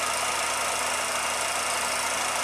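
16mm film projector running steadily: an even mechanical whir with hiss and a few faint steady tones.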